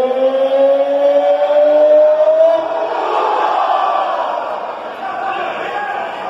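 A man's voice holding one long "oh" shout, slowly rising in pitch, that breaks off about two and a half seconds in, leaving the arena crowd's noise.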